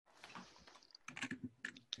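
Faint keystrokes on a computer keyboard, with a quick run of several sharp clicks in the second half.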